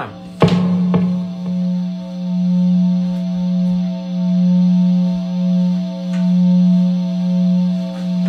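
A single electric guitar note sounding through the amplifier: a knock just under half a second in, then one low pitch that rings on and on, swelling and fading about every two seconds, as a guitar left live near the amp does.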